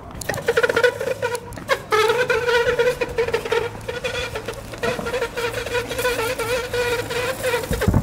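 Inline skates rolling over pavement with a long, slightly wavering high whine, the sound of the skate's heel brake dragging on the ground during a drawn-out stop. The whine breaks off briefly about two seconds in, then holds for several seconds before cutting off, over a rough rattle of the wheels on the paving.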